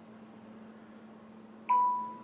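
A single electronic notification chime about a second and a half in: one clear tone that rings and fades over about half a second, over a steady low hum.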